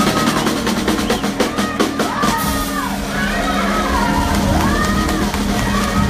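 Live blues-rock band playing electric guitars, bass and drum kit. A rapid drum fill runs over the first two seconds or so, then long notes swoop up and down in pitch over a steady bass line.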